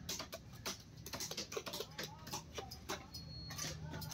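Knife scraping the scales off a large fish on a wooden chopping block: a fast, irregular run of sharp scratching clicks.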